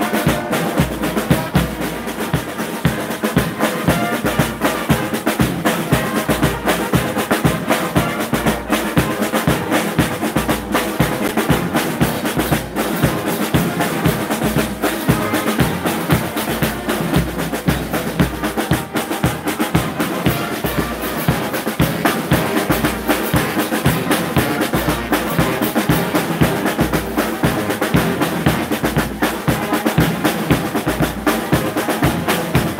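Drum corps playing slung snare drums in a fast, steady, driving rhythm with rolls, over regular low bass-drum beats.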